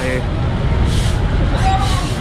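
Steady low rumble of a city street: a truck engine and passing traffic running, with brief faint voices and noises in the background.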